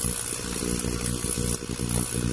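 BAKU BK-9050 ultrasonic cleaner running on its 30-watt setting, its tank of cleaning solution agitated: a steady, really loud buzz with a hiss over it.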